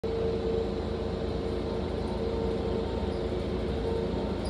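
Cabin noise inside a city transit bus under way: a steady low engine and road rumble with a constant mid-pitched hum.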